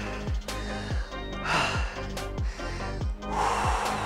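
Background music with a steady beat, over a man's heavy breathing as he recovers from a hard set of exercise, with two loud exhales, about a second and a half in and near the end.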